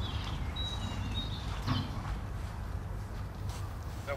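Outdoor ambience: a steady low rumble of wind on the microphone, with a few faint, short, high bird whistles about a second in.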